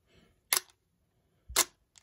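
Nikon digital SLR shutter firing for a one-second exposure: one sharp click about half a second in as the shutter opens, then a second click with a low thump a second later as it closes and the mirror drops back.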